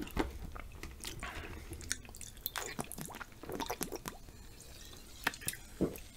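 Close-miked wet mouth sounds of eating chocolate-covered potato chips: chewing and lip smacks, heard as a run of sharp wet clicks at an uneven pace.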